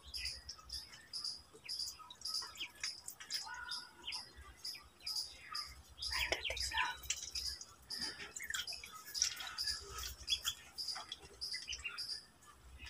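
Several ducklings peeping, short high calls repeated quickly and overlapping.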